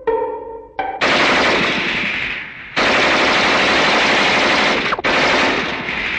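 Machine-gun fire in three long bursts, each tailing off, after a few short musical notes at the start.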